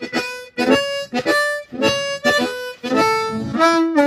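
Harmonica played cupped against a handheld Audix Fireball V microphone: a melodic phrase of short held notes with brief breaks between them.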